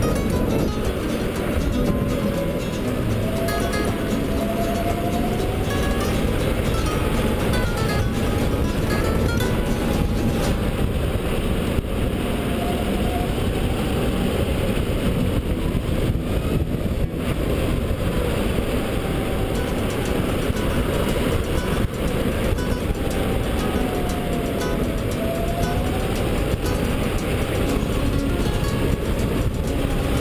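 DeWalt 84V electric go-kart's motor whining at speed, the whine slowly rising and falling in pitch as the kart speeds up and slows through the corners. A heavy rush of wind on the helmet-mounted camera's microphone lies under it.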